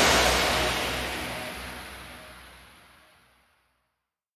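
The final sound of a hands-up electronic dance track dying away: a hissing wash that fades out steadily over about three seconds into silence.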